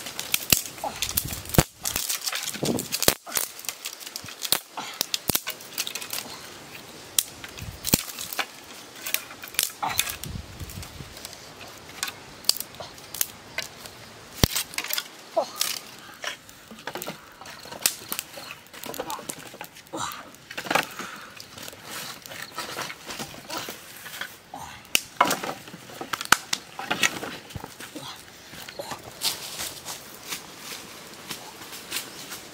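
Dry sticks and branches knocking and clattering as they are handled and stacked onto a wood pile over smouldering coals: irregular sharp knocks, sometimes several in quick succession.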